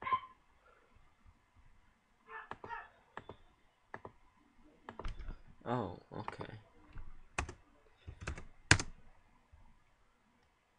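Computer keyboard keystrokes and mouse clicks, scattered and irregular, with the sharpest click near the end. A brief mumbled voice sounds about halfway through.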